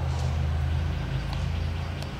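Steady low mechanical hum, like a motor or engine running, with no other clear event.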